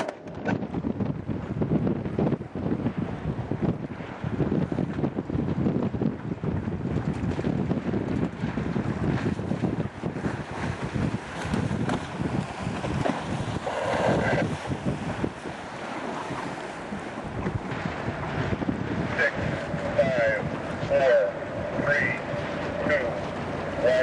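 Wind buffeting the microphone aboard an E scow sailboat under sail, over the rush of water along the hull, gusting harder in the first half. Snatches of voices come in after the middle.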